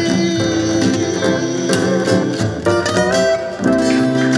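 Live Hawaiian band playing the instrumental close of a song: steel guitar, acoustic guitars and upright bass, with a quick run of notes about three seconds in.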